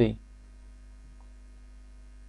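A low, steady electrical hum, with the tail of a spoken word at the very start.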